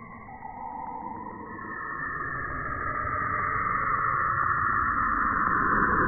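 Saturn's radio emissions converted into audio: an eerie whooshing hiss that swells steadily louder, with a faint rapid ticking beneath it.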